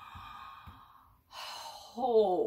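A woman's breathy sighs: two long exhalations, the second louder than the first.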